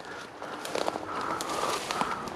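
Footsteps crunching and rustling through dry tall grass, with irregular small crackles, growing louder after about half a second.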